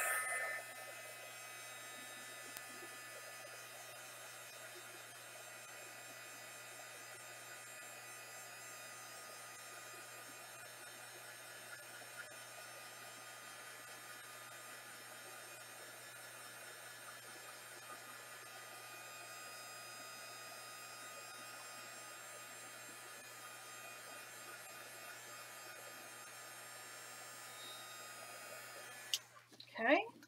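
Craft heat gun running steadily, blowing hot air over a painting to dry the acrylic paint. It cuts off about a second before the end.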